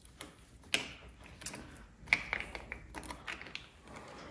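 Small metallic clicks and ticks of a T-handle Allen wrench working the bolts out of a thin plastic throttle position sensor cover, with the cover lifted free; the sharpest clicks come about a second in and at two seconds.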